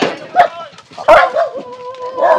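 A dog vocalising, with one long drawn-out whine starting about a second in.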